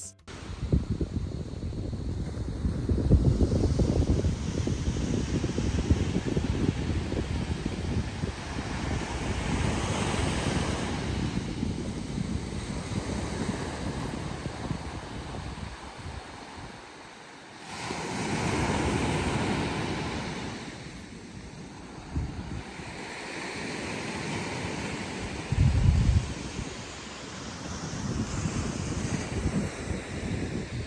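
Small waves breaking and washing up a sandy beach, with wind buffeting the microphone as a low rumble. A stronger gust hits near the end.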